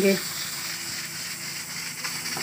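Pressure cooker heating on a lit gas burner, giving a steady, even hiss.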